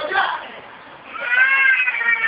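A brief bit of talk, then about halfway through a high-pitched voice breaks into a long, drawn-out shout.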